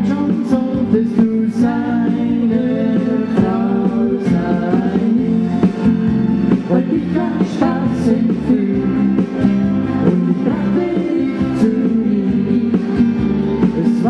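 Live band playing a pop song on electric guitars and keyboard, with a voice singing over it.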